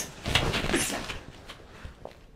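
Martial artists' hands, arms and feet working at full speed through a block-and-strike combination: a sharp slap of contact right at the start, then about a second of quick strikes, cloth rustle and footwork on the mat, tapering off.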